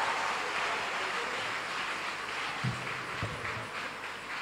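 Congregation applauding and cheering as a choir song ends, a dense clatter of clapping that gradually fades, with a couple of low thumps in the second half.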